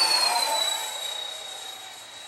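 Electric ducted fan of an LX radio-controlled MiG-29 model jet whining at wide open throttle on a high-speed pass. The whine drops in pitch and fades as the jet flies past and away.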